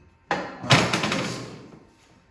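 Lengths of square steel tubing knocking together as they are shifted on a bench: two clanks less than half a second apart, the second louder, ringing out and fading over about a second.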